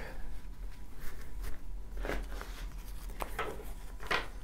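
Tarot cards being gathered and squared into a deck on a wooden tabletop: faint, soft handling sounds of the cards with a few light taps, over a low steady hum.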